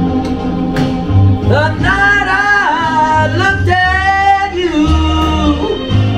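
A man singing a slow ballad into a microphone over a recorded backing track with a steady bass line, amplified through a PA speaker. His voice comes in about a second and a half in with two long, wavering held notes, then settles onto a lower note near the end.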